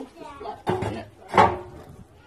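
Refractory brick being pushed into place in a steel wood-fired oven, with a short scrape and a couple of hard knocks, the loudest about a second and a half in.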